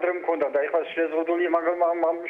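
Speech only: a voice talking without a break.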